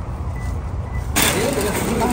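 Wind rumble and parking-lot traffic outdoors, then a sudden switch about a second in to the noise of a busy warehouse store: a shopping cart rolling, with people talking in the background.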